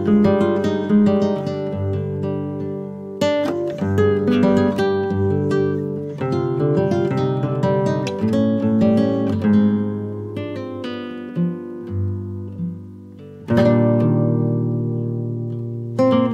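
Background music of an acoustic guitar playing picked notes that ring and fade, with loud strummed chords about three seconds in and again near the end.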